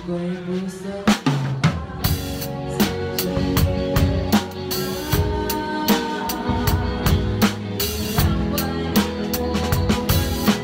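Drum kit played with sticks along to a recorded band track: snare, bass drum and cymbal hits over the song's music. The drumming comes in hard about a second in after a lighter moment and keeps a steady, busy groove.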